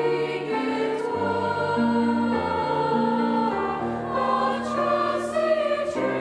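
Mixed high school choir singing in parts with grand piano accompaniment, the voices holding sustained notes and moving between chords.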